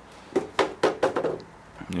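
A man's voice speaking a few indistinct words, with a short pause before he speaks again near the end.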